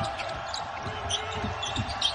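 Basketball being dribbled on a hardwood court, a few short knocks, with faint voices from players on the court in a near-empty arena.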